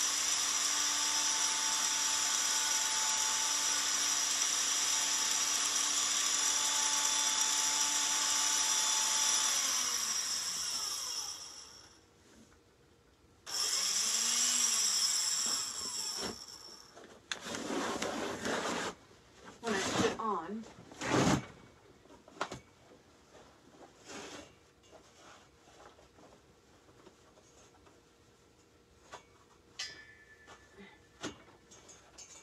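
Power advance motor of an APQS longarm quilting frame turning a roller to wind on canvas: a steady motor whine for about ten seconds that falls in pitch as it stops, a shorter second run a couple of seconds later, then a few knocks and handling sounds.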